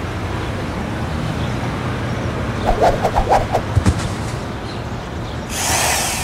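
Intro sound effects: a steady low rumble with a quick cluster of clattering knocks about halfway through, then a swelling whoosh near the end.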